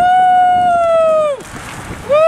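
A long drawn-out cheering "wooo" shout, held steady for about a second and a half and dropping in pitch as it ends; a second held "wooo" starts just before the end.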